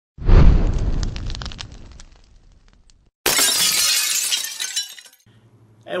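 Glass shattering: a loud crash with a trail of tinkling shards that dies away over a couple of seconds, then a second, brighter crash about three seconds in that fades out.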